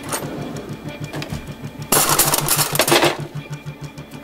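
Eerie background music with a fast, steady low pulse. About two seconds in, a wooden kitchen drawer slides open with a loud, rattling noise that lasts about a second.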